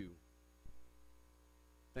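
Faint steady electrical mains hum, with the tail of a man's word at the very start and a faint short sound about two-thirds of a second in.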